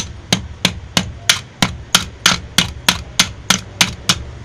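Hammer blows driving a rivet into a cooler motor's wound stator: about thirteen quick, evenly spaced strikes, roughly three a second.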